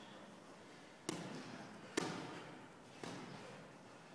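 Boxing gloves landing punches during sparring: three sharp smacks about a second apart, the middle one the loudest, each echoing in the hall.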